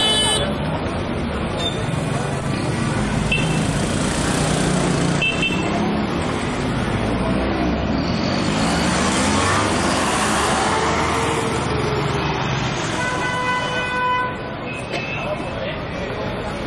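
Street traffic noise with car horns: a short toot right at the start and a longer honk near the end, over a steady traffic rumble with a vehicle's pitch rising and falling in the middle.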